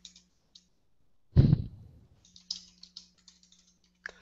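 Computer keyboard being typed on in scattered keystrokes, with one loud thump about a second and a half in, over a faint steady hum.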